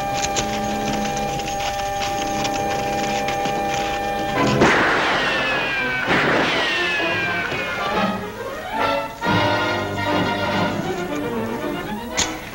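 Orchestral underscore of a 1950s TV western with held chords. About four and a half seconds in, and again about a second and a half later, a sharp gunshot, each trailing off in a falling ricochet whine.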